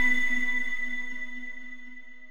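Channel intro music ending on a held chord of several steady tones that fades steadily away.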